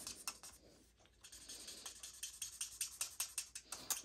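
A marker's bullet tip scratching on cardstock in quick, short colouring strokes, faint, with a brief pause about a second in.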